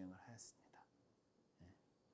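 Near silence, with faint, quiet speech only in the first half second.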